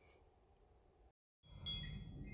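Near silence for about a second, then, after a brief dead gap from an edit, faint steady high chiming tones ringing over a low outdoor background.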